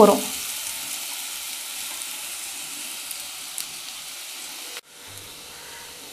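Chopped onions and curry leaves sizzling steadily as they sauté in a kadai, being softened before ginger-garlic paste goes in. The sizzle cuts out for a moment near the end and then carries on slightly quieter.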